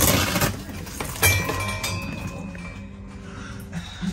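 Clear vinyl enclosure panel rustling and crinkling as it is pulled out of its frame track, with a sharp click a little over a second in. A faint steady tone lingers for about a second and a half afterwards.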